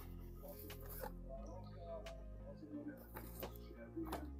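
Faint background music playing steadily, with a few short clicks and rustles of packaged merchandise being handled on a store shelf.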